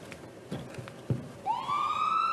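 A siren starting up about one and a half seconds in, its wail rising in pitch. A short knock comes just before it.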